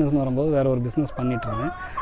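A man speaking close to a lapel microphone, with a faint, slightly rising held tone in the background during the second half.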